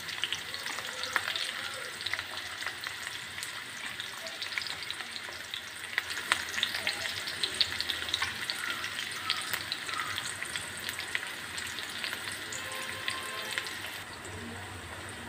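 Chopped onions frying in hot oil in a kadai: a steady sizzle scattered with small crackles and pops.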